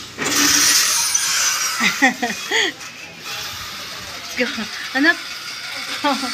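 A burst of rustling noise for about a second and a half at the start, as the phone is moved and rubs against clothing, followed by a few short snatches of talk.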